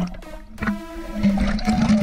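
Water splashing and churning at the surface as a tiger shark thrashes beside the boat, louder in the second half, with a sharp knock about half a second in. Background music plays throughout.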